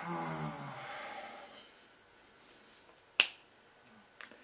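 A man hums a thoughtful "hmm" for about a second, its pitch falling slightly, then breathes out softly. About three seconds in comes a single sharp finger snap, the loudest sound.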